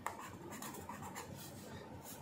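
Pen scratching faintly on paper in short strokes while drawing, with a small tap of the pen near the start.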